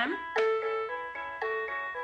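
B. Toys Meowsic cat toy keyboard playing one of its built-in preset melodies through its small speaker: a quick run of bright electronic notes, about four a second.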